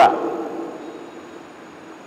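The end of a man's spoken word echoing in a reverberant room and fading over about a second and a half, then a steady faint background hiss with a thin high whine.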